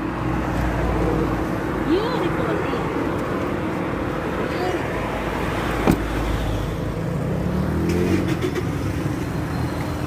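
Steady motor-vehicle noise with a low rumble that comes and goes, and muffled voices in the background. There is a single sharp click about six seconds in.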